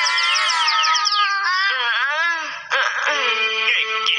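Several high-pitched cartoon voices in a quick string of falling cries, then one wail that bends up and down. About three-quarters of the way through, music comes in suddenly with held notes.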